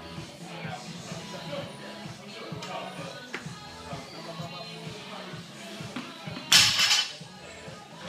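Loaded Olympic barbell with bumper plates dropped from overhead onto the gym floor after a snatch: a loud crash about six and a half seconds in, bouncing once or twice over half a second, over background music.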